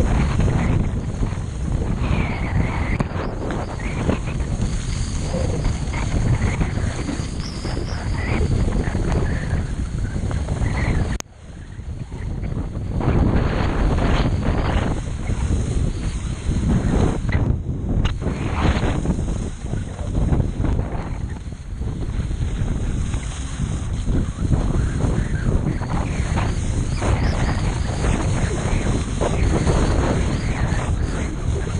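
Wind rushing over the microphone of a body-worn camera on a skier going downhill, mixed with skis sliding over snow. The noise drops out for a moment about eleven seconds in.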